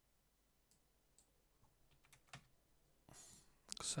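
A few faint computer mouse clicks at uneven intervals against near silence, then a short breath just before speech resumes at the end.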